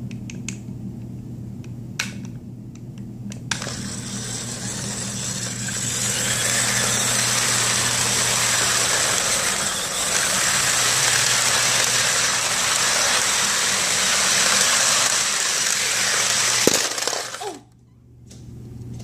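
Toy electric train running on plastic track: a steady whir from its small motor and wheels that starts a few seconds in, grows louder, and cuts off suddenly near the end. A few clicks at the start as the power controller is handled, over a low steady hum.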